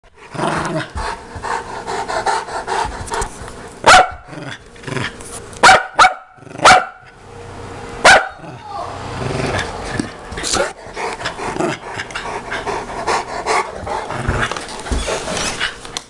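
A Saint Bernard and a Parson Russell Terrier play-fighting, with steady growling throughout and five loud, sharp barks between about four and eight seconds in.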